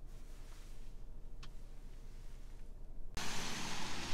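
Low steady hum inside the cabin of an idling car, with a single faint click about a second and a half in. Near the end the sound cuts abruptly to a steady outdoor hiss.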